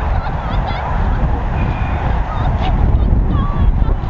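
Wind rumbling on the microphone, with short bird calls and chirps over it throughout.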